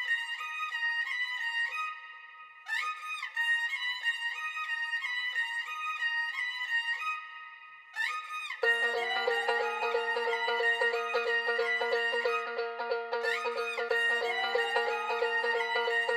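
Intro of an instrumental Indian-style hip-hop/trap beat: a high, violin-like melody repeating in short phrases, dipping briefly twice. About halfway through, a fuller, lower layer comes in with a held low note and rising slides.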